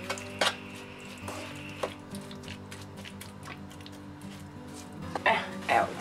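Wooden spoon stirring minced meat in a nonstick frying pan, with a few scattered scrapes and knocks of the spoon against the pan, over soft acoustic guitar background music.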